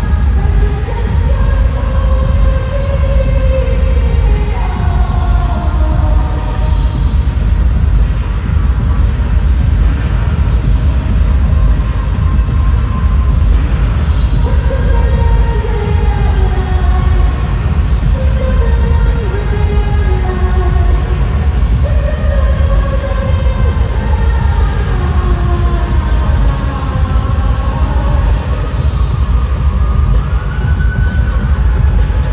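Live pop concert music through a large arena sound system, loud and heavy in the bass, with a melody line that slides up and down over it.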